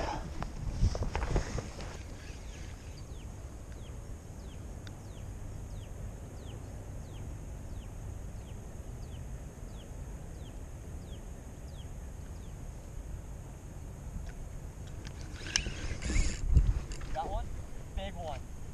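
Wind rumbling on a small action-camera microphone. For several seconds, a run of short, high, falling squeaks comes about twice a second. Near the end there is a cluster of handling knocks.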